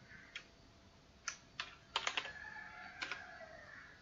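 Computer keyboard keys clicking as a line of code is typed and run: about half a dozen separate, unevenly spaced keystrokes, fairly faint.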